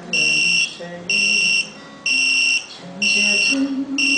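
An electronic clock alarm buzzer beeping in a steady pattern: high, even beeps about half a second long, roughly once a second. A song with singing plays underneath.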